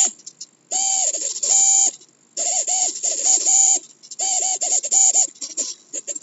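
Two small hobby servo motors whining in repeated bursts of about a second, with short gaps between, as they swing back and forth following the tilt of a Wii Nunchuck. These servos are pretty noisy, with some jitter.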